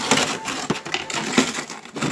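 Plastic food tubs being shifted inside a frosted chest freezer: crackling and rustling, with a couple of light knocks.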